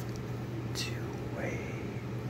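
Very slow whispering, each syllable drawn out, with a long hissed 's' a little under a second in.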